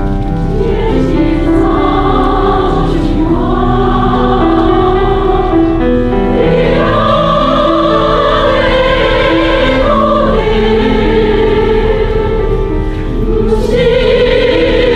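Mixed choir of men's and women's voices singing in harmony, with long held notes, growing louder near the end.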